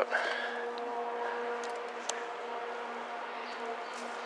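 A steady, even machine hum with a constant whine-like pitch and no change in speed, with a couple of faint clicks about two seconds in.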